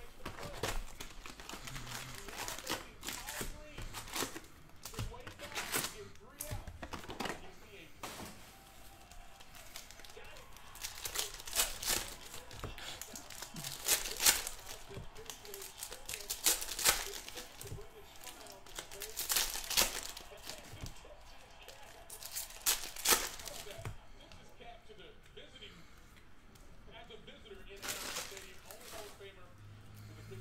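Foil trading-card packs being torn open and crinkled by hand, a run of sharp crackling tears with the loudest few in the middle stretch, along with the rustle of cards being handled.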